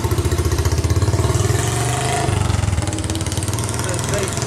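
A motor vehicle engine idling nearby with a steady, rapid low pulse, its note dropping slightly about halfway through.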